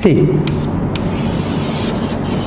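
Chalk scratching on a chalkboard as an equation is written and a box drawn around it, with a few sharp taps of the chalk against the board.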